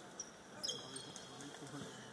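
Basketballs bouncing on an indoor hardwood court, with a brief high squeak about two-thirds of a second in and faint voices in the background.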